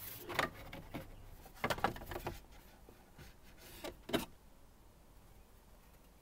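Plastic inner dash bezel of a 2005 GMC Envoy scraping and clicking against the dash as it is slid out past the steering wheel, in a few short scrapes over the first four seconds.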